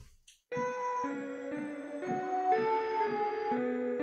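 Keyboard-like synthesizer melody, the high synth line of the song, a B Dorian phrase. It enters about half a second in and steps through a series of overlapping notes, a new one roughly every half second.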